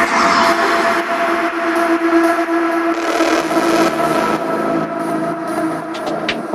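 Dark minimal techno in a breakdown with no kick drum: sustained droning tones over a hissing, rumbling noise texture. A lower tone joins about halfway through.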